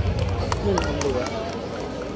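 Loud stage music with heavy bass stops at the very start, leaving indistinct voices and audience chatter, with a few light clicks.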